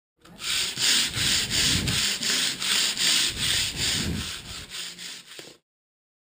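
Rhythmic back-and-forth rasping strokes on wood, like hand sanding, about four strokes a second, growing weaker near the end before stopping.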